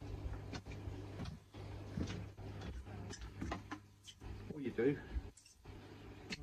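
Handling of a plastic dechlorinator filter housing and cartridge: scattered light clicks and knocks over a steady low hum, with a brief mumbled voice about five seconds in.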